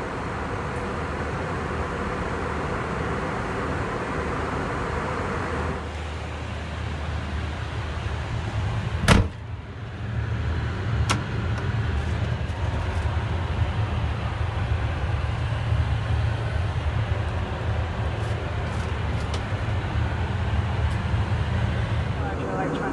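Steady cabin noise of an Airbus A321 airliner in cruise, a constant rushing with a low rumble underneath. A sharp click about nine seconds in is the loudest sound, with a fainter click about two seconds later.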